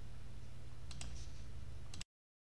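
Steady low hum and faint hiss of the recording's background noise, with a couple of faint clicks about a second in. The sound cuts off abruptly near the end.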